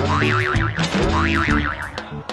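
Background music with a cartoon comedy sound effect: a springy, boing-like tone that swoops up and then wobbles rapidly up and down, heard twice.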